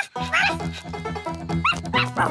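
Light cartoon background music with a steady bass line starts just after the beginning, with a couple of short, rising, squeaky dog-like yips from the cartoon ladybirds over it.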